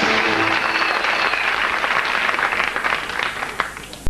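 Studio audience applause. The last held notes of the closing theme music end about half a second in, and the clapping fades away toward the end.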